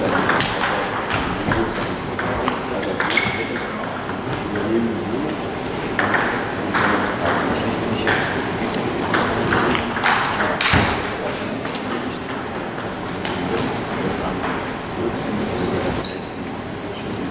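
Table tennis ball clicking repeatedly off the bats and the table during rallies. Near the end there are a few short shoe squeaks on the hall floor.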